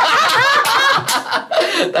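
Several people laughing together, loudly, in overlapping chuckles and giggles.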